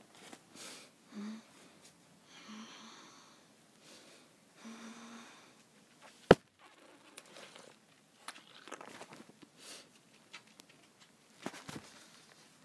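A girl's muffled closed-mouth whimpers as she reacts to the sourness of a mouthful of sour Skittles: three short hums in the first five seconds, among faint mouth and handling noises. A single sharp click about six seconds in is the loudest sound.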